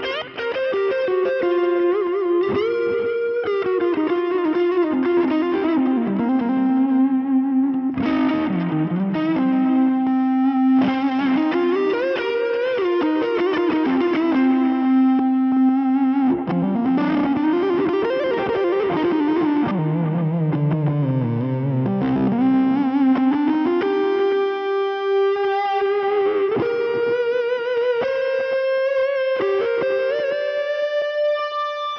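Electric guitar played through the Fender Tone Master Pro's 'British' Plexi amp model with a tube-driver overdrive block, giving a smooth overdriven lead tone. The lead lines have long held notes, bends and vibrato, and a run dips low past the middle. The sound comes through two cabinet impulse responses, one with a 121 mic and one with an SM57, panned slightly left and right.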